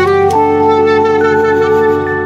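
Sad clarinet melody: a short note steps up about a third of a second in to a long held note, over a sustained low accompaniment.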